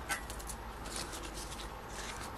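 Faint rustling and light clicks of a stack of polymer banknotes being handled, over a low steady hum.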